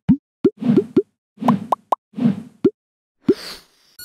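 Cartoon pop sound effects: a quick run of about seven short upward-sliding 'bloop' pops, with brief swishes between them.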